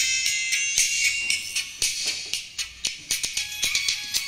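Music reproduced through WT A500 titanium bullet tweeters fed through a single capacitor with no crossover, so only the treble comes through: bright cymbal and percussion ticks with no bass or midrange.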